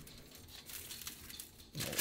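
Faint crinkling of aluminium foil and soft rubbing as a hand spreads seasoning over a raw trout fillet lying on the foil.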